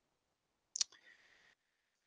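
Near silence broken by a single short click a little under a second in, followed by a faint hiss lasting about half a second.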